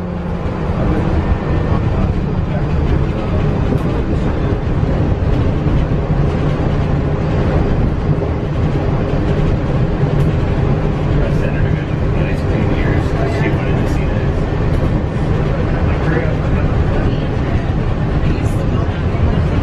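Walt Disney World monorail running, heard from inside the car: a steady low rumble and hum, with faint voices over it.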